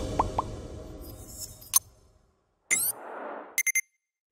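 Animated end-screen sound effects: three quick rising pops at the start over a fading music bed, then after a pause a rising swoosh and a short burst of bright clicks and chimes near the end.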